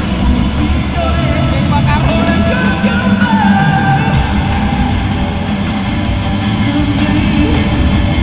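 Live rock band playing loudly with a singer over it, heard from high up in the stands of a large concert venue.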